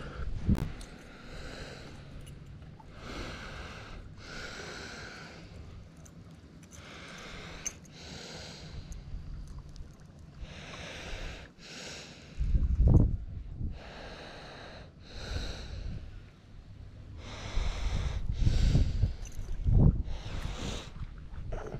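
A person breathing close to the microphone, a noisy breath every second or two. Gusts of wind buffet the microphone with a low rumble about two-thirds of the way through and again near the end; these are the loudest sounds.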